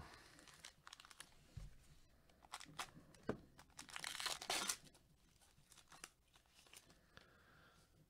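A foil wrapper on a pack of 2020 Panini Chronicles baseball cards being torn open and crinkled, faint, with scattered crackles and a louder tearing stretch about four seconds in.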